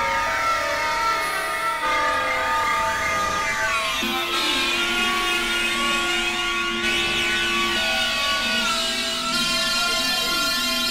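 Experimental synthesizer drone music played live on a Novation Supernova II: layered held tones under crisscrossing, sweeping pitch glides. A low note holds steady from about four seconds in to nearly eight.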